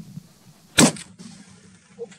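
A single hunting rifle shot about a second in, sharp and brief, the loudest sound by far. The shot strikes the ibex high on the body.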